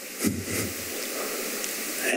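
Steady hiss on the microphone feed of a meeting room, with one short, soft sound about a quarter second in.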